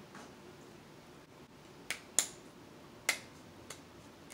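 Crab shell being cracked open by hand: four sharp snaps, the loudest a little over two seconds in.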